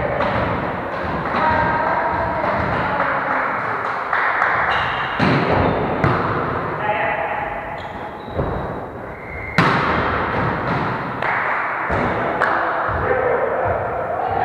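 A volleyball being struck and landing on a wooden gym floor: several sharp thuds spread through the rally, the loudest a little before ten seconds in, echoing in a large sports hall. Players' voices call out between the hits.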